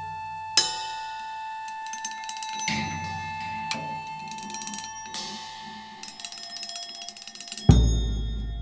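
Percussion music: sharp strikes at irregular moments, each leaving ringing tones, over a steady high tone held throughout. A much heavier, deep hit comes near the end.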